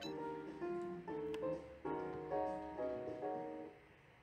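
Soft background piano music, a slow run of held notes, fading out near the end.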